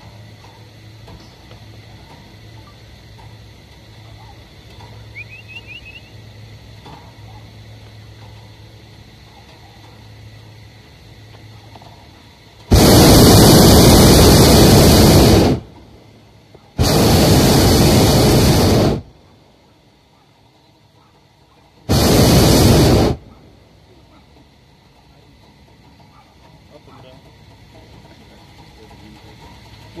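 Hot air balloon's propane burner firing in three blasts, the first about three seconds long, the second about two, and the third just over a second, with short gaps between.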